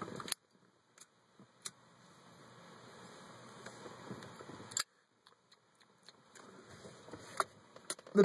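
A soft, faint breathy hiss that slowly swells over a couple of seconds: a man drawing on a cigarette and blowing out the smoke. A few faint sharp clicks come before it and after it.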